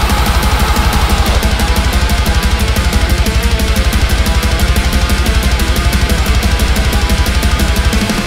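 Metalcore song: heavily distorted electric guitar riffing over a fast, even kick-drum pattern and bass, loud and dense.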